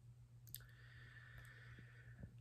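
Near silence: room tone with a low steady hum and one faint click about half a second in.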